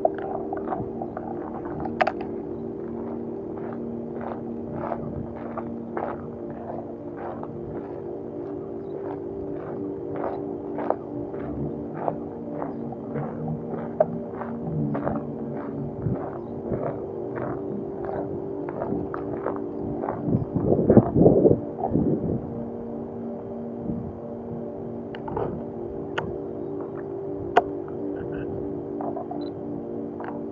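Footsteps crunching on gravel, about two steps a second, over ambient background music with a steady low drone. About two-thirds of the way through comes a louder rumble lasting a second or so.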